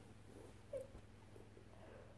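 Near silence: room tone with a faint steady hum, broken by one brief, faint squeak-like sound just under a second in.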